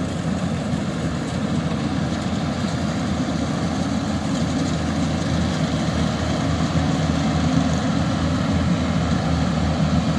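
Yanmar YH850 crawler combine harvester's diesel engine and threshing machinery running steadily while harvesting rice. It gets gradually louder toward the end as the machine draws close.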